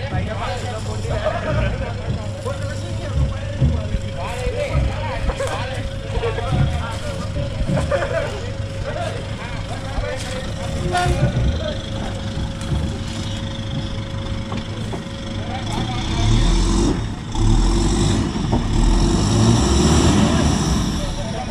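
A 4x4 pickup truck's engine running at low revs as the truck crawls through deep ruts on a dirt slope, working harder and louder over the last few seconds.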